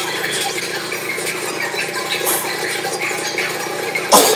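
Cartoon soundtrack playing from a television and recorded off its speakers: a dense, steady mix of sound effects.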